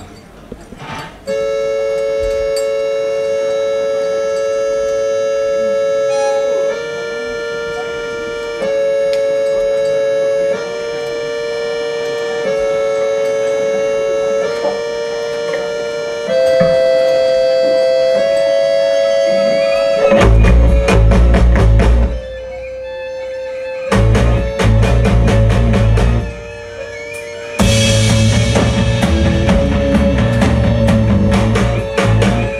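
A live band opening a song: a sustained two-note chord line, changing notes every couple of seconds, plays alone at first. About two-thirds of the way in the drums, bass and guitar come in with stop-start hits, cutting out briefly twice before playing on.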